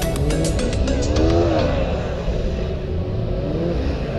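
Car engine revving up and down several times in quick succession, as in gymkhana driving, then running more steadily. Backing music with a beat fades out in the first second.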